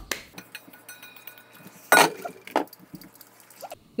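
Stainless steel kitchenware knocking and clinking: one loud knock about two seconds in, then a few lighter clinks, with faint scattered ticks around them.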